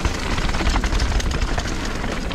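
Calibre Triple B mountain bike running fast down a loose gravel and shale trail: tyres crunching over stones with a dense patter of clicks and rattles, under a heavy wind rumble on the camera's microphone.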